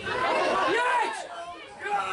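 People's voices chattering close by, loudest in the first second and then fading.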